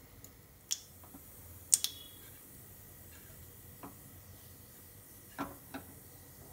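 Black mustard seeds popping in hot oil as a tempering: a handful of sharp, separate pops a second or so apart, the loudest a little under two seconds in, over a faint steady hiss.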